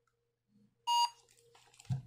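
A single short electronic beep, about a quarter of a second long, about a second in, from the Annke Crater Pro (I81CG) indoor security camera's speaker.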